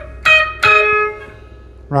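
Electric guitar playing two single high notes on the first string around the 11th fret, about half a second apart, as a lead fill. The second note is lower and is left ringing for about a second.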